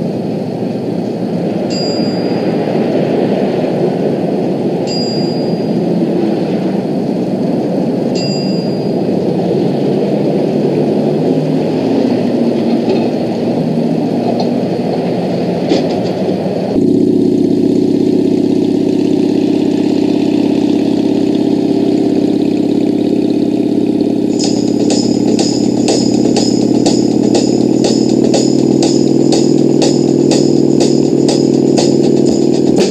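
A vintage gas pump's bell dinging about every three seconds as fuel is pumped, over a steady running engine. About halfway through, it cuts sharply to a music track of held notes, joined near the end by a quick, even tambourine-like beat.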